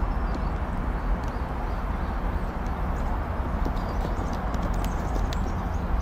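A steady, even rushing noise with irregular faint clicks and ticks over it.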